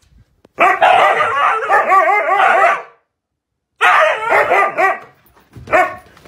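Husky barking and yowling in rapid, pitched yips that rise and fall: a long run of about two seconds, a second run of about a second after a short pause, and one brief call near the end.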